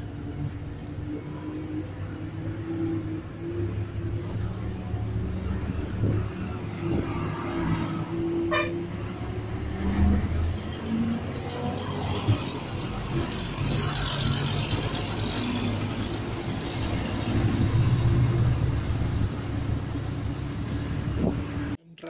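Diesel engine of an Ashok Leyland KSRTC bus running under load on a ghat road, heard from the rear seat with road and body noise, swelling louder a few seconds before the end. Vehicle horns toot over it in the first half. The sound cuts off suddenly just before the end.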